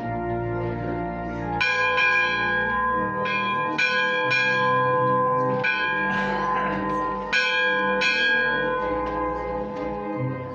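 Church organ music of held chords, with bright bell-like notes struck one after another over the sustained tones.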